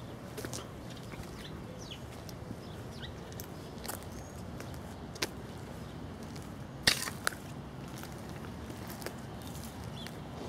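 Quiet outdoor ambience with faint, brief bird chirps and scattered footsteps and light clicks, and a sharper knock about seven seconds in.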